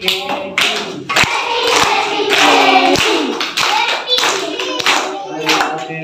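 A roomful of children clapping and singing together, with sharp, uneven handclaps over their voices.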